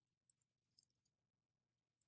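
Faint computer keyboard typing: a quick run of soft key clicks over about the first second, then near silence.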